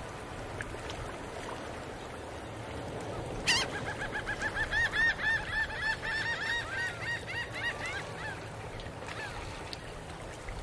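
A bird honking in a rapid run of short calls, about four a second, starting suddenly with a sharp click about three and a half seconds in and thinning out after about eight seconds, over a faint hiss.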